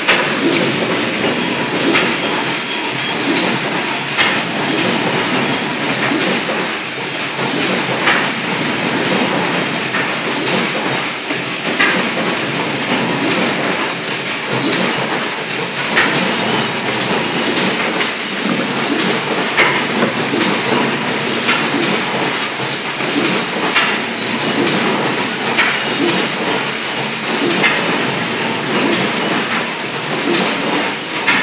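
Planet G Creaser Gold programmable creasing machine running as printed card sheets are fed through and creased: a steady mechanical clatter with a sharp click every few seconds.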